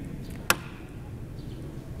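Faint room tone with a single short, sharp click about half a second in.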